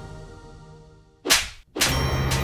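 A loud, sharp slap sound effect, a single whip-like crack about a second and a quarter in, after the background music has faded almost to silence. Half a second later a dramatic music hit opens a low, tense drone.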